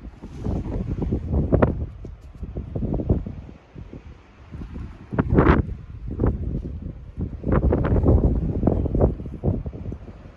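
Wind gusting across the microphone, a low rumble that swells and drops in irregular surges, strongest around the middle and again near the end.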